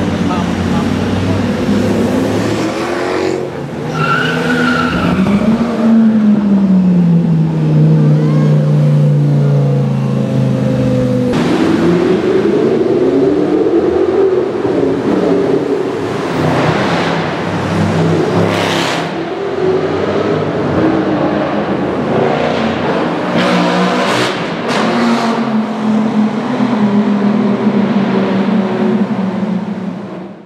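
Lamborghini Gallardo V10 engine revving and accelerating, its pitch climbing and dropping repeatedly through gear changes, with one long falling run-down. Several sharp cracks in the second half.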